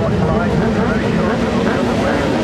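Many racing motorcycle engines running together while the bikes sit on the start grid, a loud, steady mass of engine sound with wavering pitch, mixed with voices.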